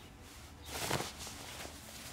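Rustle of cloth as a jacket is pulled off the shoulders and arms, one soft swishing rustle about a second in.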